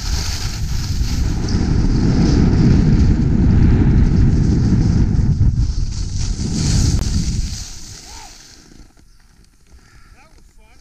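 Wind buffeting the microphone and skis hissing over packed, groomed snow during a fast downhill run. The sound dies away about eight seconds in as the skier slows to a stop.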